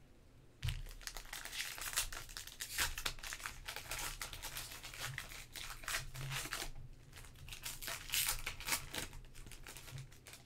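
Foil wrapper of a Panini Mosaic soccer card pack crinkling and tearing as it is opened by hand. The crackling starts about a second in, pauses briefly near the three-quarter mark, then comes again.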